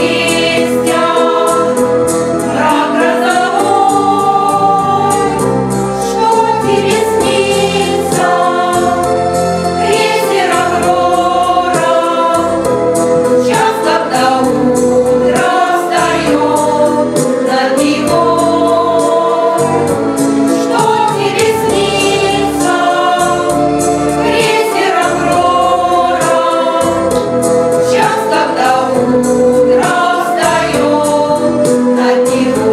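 A women's vocal ensemble of seven singers singing together in a continuous, steady song phrase.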